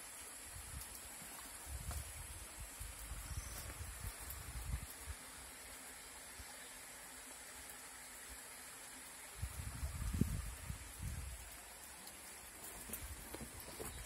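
Faint, soft low bumps of footsteps and camera handling while walking slowly over rocky ground, in two short spells about a second in and again about ten seconds in, over a faint steady high hiss.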